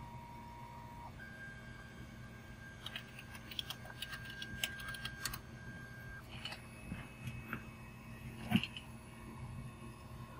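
Geeetech A10 3D printer running faintly while printing: its stepper motors whine at a steady pitch that jumps to a new note a couple of times as the moves change, over a low steady hum, with a few light ticks in the middle.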